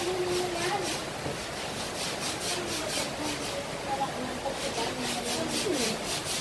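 Stiff brush scrubbing wet cement, scouring off moss, in spells of back-and-forth strokes about four a second with short pauses between.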